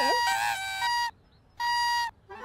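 Party blowers tooting: a steady reedy toot lasting about a second, a short pause, then another toot of the same pitch near the end.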